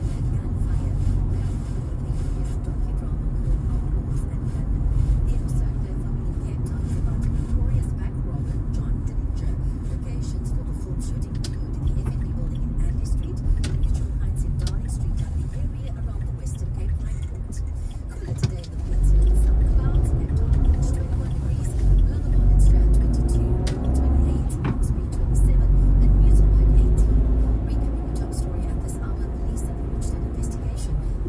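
Car engine and tyre noise heard from inside the cabin while driving: a steady low rumble that grows louder about two-thirds of the way through as the car pulls away and picks up speed.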